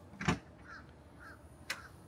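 Latch of a motorhome's exterior storage compartment door releasing with a sharp clunk, then a lighter click near the end as the door is swung up open.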